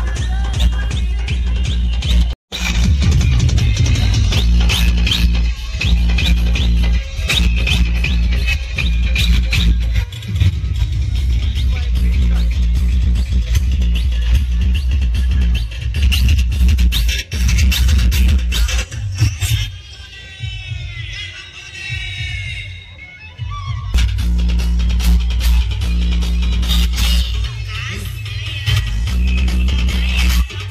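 Loud DJ dance music with heavy bass, played through a truck-mounted sound system of stacked bass speaker cabinets. The sound cuts out for an instant a couple of seconds in. Later the bass drops away for about four seconds, leaving sweeping, gliding tones, then comes back in.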